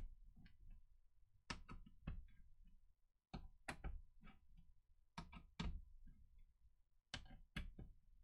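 Faint, sharp clicks and taps of a screwdriver working small screws into a laptop's heatsink hold-down, in clusters of two or three every second or two.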